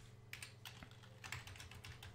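Faint computer keyboard keystrokes: a handful of uneven clicks as a command is typed, over a low steady hum.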